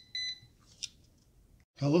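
Non-contact voltage pen giving a short, high-pitched beep at the start, its alarm for sensing live 120 V AC, followed by a brief click a little before the middle.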